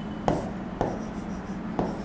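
Felt-tip marker writing on a whiteboard, with three short, sharp strokes as a line and a letter are drawn.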